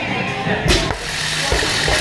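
Loaded 155 lb barbell with bumper plates dropped to the rubber gym floor at the end of a set of deadlifts, landing with one thud a bit under a second in, over background music.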